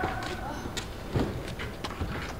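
Footsteps of actors walking on a hard floor: a couple of soft thumps, one about a second in and another near the end, over a low room hum.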